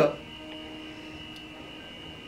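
Faint steady room tone: a low hum with a thin, high steady whine, and no other event.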